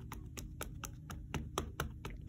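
An ink pad dabbed rapidly onto a clear stamp to re-ink it: a run of light, quick taps, about six a second.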